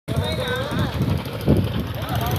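Small engine running on a homemade raft, driving it across a pond with water churning out behind, while people's voices call out over it.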